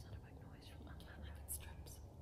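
Faint whispering in short breathy snatches, over a low steady hum.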